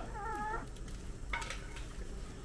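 An animal's short wavering call, about half a second long, followed about a second later by a brief sharp sound.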